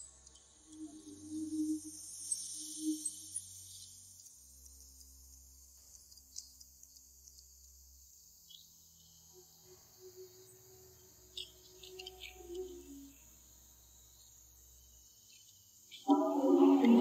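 Faint night ambience of crickets chirping, clearest in the first few seconds, over a low hum.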